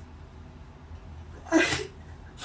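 A woman sobbing: one short, sharp, breathy sob about one and a half seconds in, with her hand pressed over her mouth.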